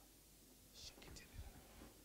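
Near silence with a brief faint whisper a little under a second in, followed by a few soft low bumps.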